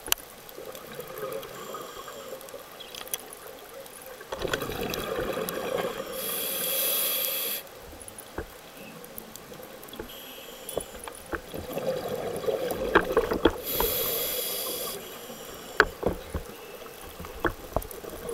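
Scuba regulator heard underwater: twice, a burst of bubbling exhale followed by the hiss of an inhale, about eight seconds apart. Scattered sharp clicks run throughout.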